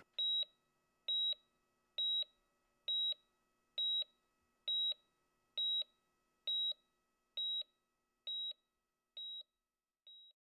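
Electronic patient-monitor heartbeat beep: a short high beep about once a second, eleven in all, the last few fading out.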